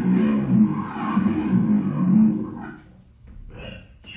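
Amplified experimental noise from a live electronics set: a low, rough, wavering drone that fades out about two and a half seconds in, leaving a few scattered crackles.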